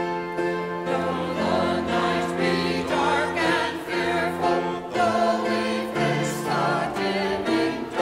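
Mixed church choir singing a hymn, with sustained notes on the line 'Though the night be dark and fearful, though we face the dimming day'.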